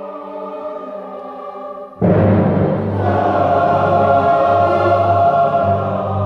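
Live concert music: a choir singing held chords, which break suddenly into a much louder, fuller passage with strong low notes about two seconds in.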